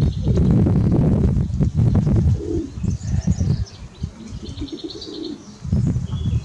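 Pigeons cooing in low rounded calls, one around the middle and another near the end, with short high bird chirps between them. A loud low rumble fills the first two seconds.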